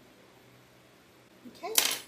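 Faint room tone, then about a second and a half in a woman says "okay" over a single sharp tap, the loudest sound here, as a small plastic shell tool is set down on the work board.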